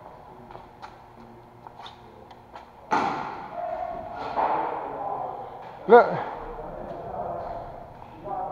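A loud thump about three seconds in, echoing through a large hall and trailing off over a couple of seconds; otherwise faint clicks, with a single spoken word near the end.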